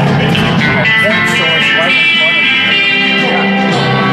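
Rock music with guitar, played back loud through a pair of small powered studio monitor speakers and heard from the listening seat between them.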